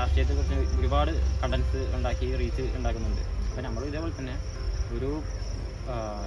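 A person talking, with a steady high-pitched tone and a low hum running underneath.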